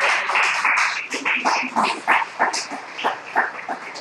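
Congregation applauding: a dense burst of hand clapping that thins into scattered single claps and dies away near the end.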